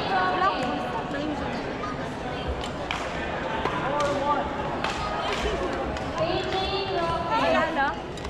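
Voices and chatter of players and spectators in a sports hall, with short sharp racket strikes on a badminton shuttlecock scattered through a doubles rally.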